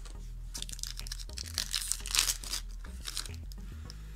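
A foil Yu-Gi-Oh! booster pack wrapper being torn open and crinkled by hand, loudest about two seconds in.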